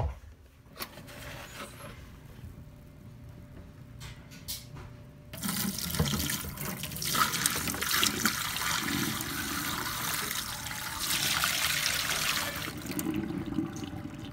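Dirty wash water pouring from a carpet cleaner's recovery tank into a stainless steel sink. The pour starts about five seconds in, runs steadily for several seconds, and eases off near the end.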